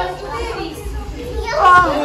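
Children playing: excited kids' voices and chatter, with one child's high-pitched call about three quarters of the way through.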